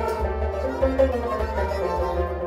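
Kashmiri Sufi ensemble music: a harmonium playing together with a bowed string instrument and a plucked long-necked Kashmiri sitar, a continuous melodic passage.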